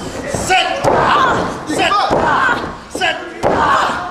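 People shouting in a large hall, with several thuds and slaps on the wrestling ring's mat.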